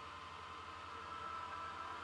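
Faint steady hiss with a low hum and a faint high tone underneath: background noise with no distinct sound event.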